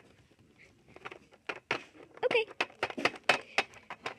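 Handling noise: a quick run of light clicks and taps, starting about one and a half seconds in, with a brief voice sound among them.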